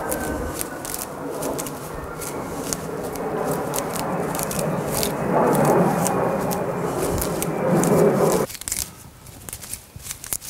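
Maple leaves being plucked by hand, giving irregular small snaps and crackles of leaf and twig, over a steady background rumble that cuts off suddenly about eight and a half seconds in.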